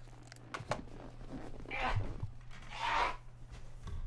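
Faint rustling near the microphone: two soft swishes about a second apart, over a steady low hum.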